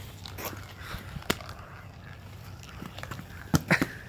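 Marbles rolling down an orange plastic Hot Wheels track over a low steady background, with a sharp click a little past a second in and a quick cluster of loud clicks about three and a half seconds in.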